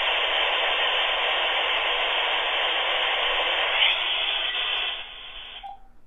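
Dial-up modem handshake heard through a home telephone on the same line: a steady hiss of scrambled data noise. It thins out about five seconds in and stops just before the end as the modem finishes connecting.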